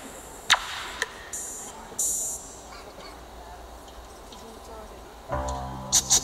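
Sparse band soundcheck sounds in a large hall: a single sharp hit about half a second in and two short hissing bursts, like cymbal or hi-hat, around one and two seconds. Then low hall noise, until a low held note comes in near the end.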